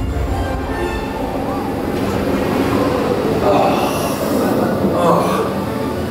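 Indiana Jones Adventure ride vehicle running along its track in a dark stretch of the ride, with a low rumble that is strongest in the first second.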